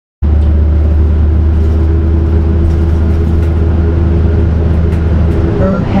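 Transit bus engine running with a steady low rumble and hum, no revving. A voice begins just at the end.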